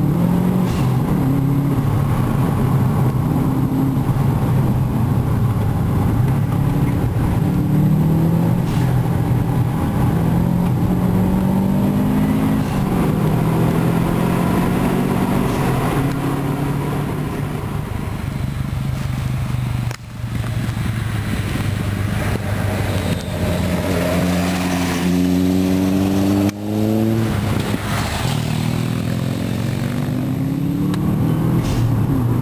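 Car engine heard from inside the cabin, accelerating hard through the gears: its pitch climbs repeatedly, with brief drops at gear changes about two-thirds of the way through and again near the end.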